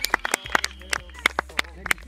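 Close-by hand clapping, quick irregular claps about six a second, applauding a goal just scored, with faint voices behind.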